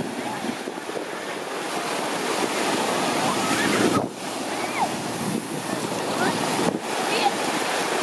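Steady rush of surf and wind buffeting the microphone, with faint crowd voices mixed in.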